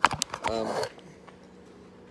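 A few sharp knocks and rubs at the start as the phone camera is picked up and moved, followed by a brief spoken "I um" and then quiet room tone with a faint steady hum.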